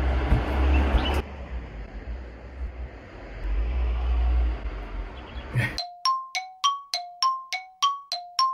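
A low rumble of room and handling noise with no speech, then about six seconds in background music starts: a bell-like melody of evenly spaced ringing notes, about three a second, alternating between two pitches.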